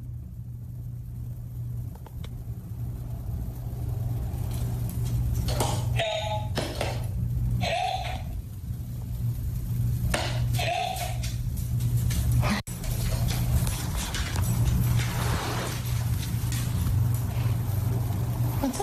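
Recordable talking buttons on a dog's word board, pressed by the dog's paw, each playing back a short recorded word. There are three about two seconds apart, the last about ten seconds in saying "help", over a steady low hum.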